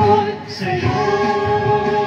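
A woman singing a song, holding one long steady note from about a second in.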